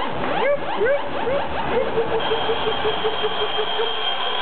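Electronic synthesizer effects in a dance mix over a PA: a quick run of rising zaps in the first couple of seconds, then a short tone pulsing about five times a second under a steady high whistling tone.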